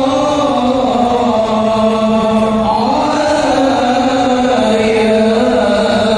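Shalawat, Islamic devotional praise of the Prophet, chanted in long held notes that glide slowly up and down.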